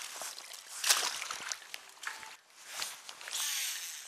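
Shallow water sloshing and splashing around a wire fish basket at the water's edge, with scattered small knocks and rustles. There is a louder splash about a second in and a longer hissing splash near the end.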